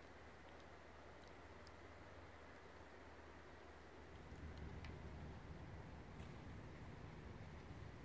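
Near silence: faint night-time backyard ambience, with a slightly louder low rustle from about four seconds in.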